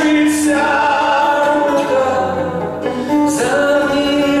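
Two male voices singing a Belarusian song together over two acoustic guitars. They hold long notes, ease off briefly near three seconds in, then start a new phrase.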